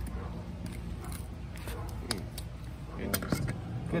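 A fillet knife slicing open the belly of a small fish: a few faint scrapes and ticks over a steady low background hum.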